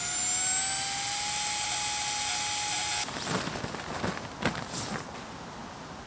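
Flextail Gear Zero mini electric air pump running as it inflates a sleeping mat: a steady motor whine that rises slightly in pitch, then cuts off about three seconds in. After that come quieter rustling and a few light knocks as the pump and mat are handled.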